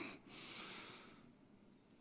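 A man's breath close to the microphone: one short, hissy inhale under a second long, fading out into near silence.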